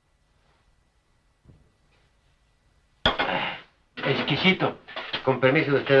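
Near silence with a faint thump, then from about three seconds in a short noisy burst and a man talking.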